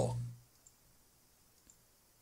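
A man's voice trails off at the start, then near silence with two faint clicks about a second apart.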